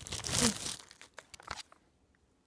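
Plastic wrapping and a sample packet crinkling as a hand digs through a cardboard box of cosmetics, loudest in the first half-second, then a few light rustles and clicks that fade out.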